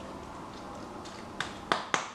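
Meat stuffing being pressed by hand into a hollowed-out long marrow: quiet at first, then three short clicks in the second half as the fingers push the stuffing in.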